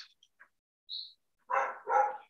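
A dog barking twice in quick succession, about a second and a half in.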